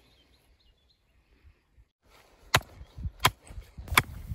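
Hammer blows on a wooden stake being driven into field soil: three sharp strikes in the second half, about two-thirds of a second apart, over wind noise on the microphone. A few faint bird chirps come in the quiet first half.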